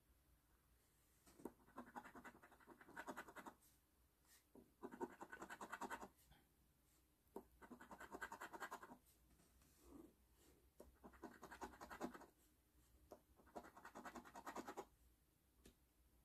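A coin scratching the coating off a paper scratch-off lottery ticket in five short bouts, each a second or two of quick rasping strokes, with brief pauses between them.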